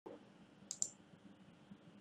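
Two sharp clicks in quick succession, a little before a second in, from someone working at a computer, over a faint steady hum.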